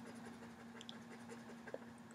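Faint scratching and light ticks of a pen on a writing surface, with one sharper tick about three-quarters of the way through, over a steady low hum.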